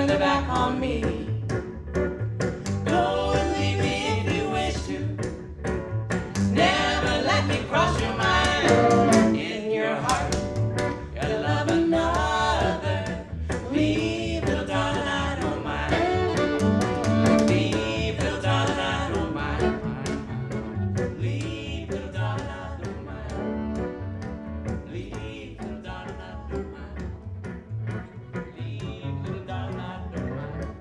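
Western swing trio playing live: a woman sings over archtop guitar and upright bass, then a fiddle takes the lead past the middle, the bass keeping a steady beat underneath.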